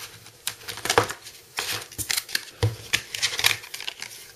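Hands working open a clear plastic clamshell case around a memory module: a quick, irregular run of sharp plastic clicks and snaps, with rustling handling noise in between.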